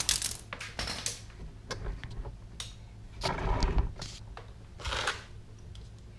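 Scattered light clicks and rustles of handling and movement, with louder rustling bursts about three and a half seconds in and again near five seconds.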